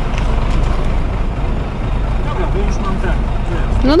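Diesel truck engine running at low revs with a steady low hum, while a semi-trailer truck is manoeuvred slowly through a tight turn.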